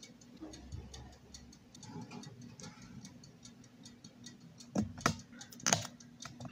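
Faint, quick, steady ticking of a clockwork mechanism, with two or three sharper clicks and knocks near the end as small metal parts are handled.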